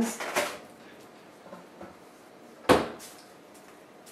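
A single sharp knock about two-thirds of the way through, with a short ring-out, against quiet room tone.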